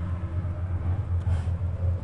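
A steady low hum inside the pickup's cab.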